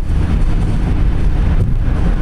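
Car interior noise at freeway speed: a steady low rumble of road and engine noise, with wind noise on the microphone.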